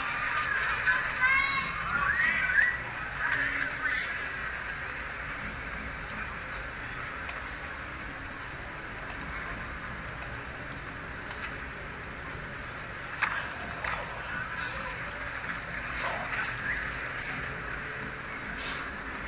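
Arena crowd calling out and shouting in high, wavering voices for the first few seconds, then settling into a steady murmur. A single sharp knock comes about 13 seconds in.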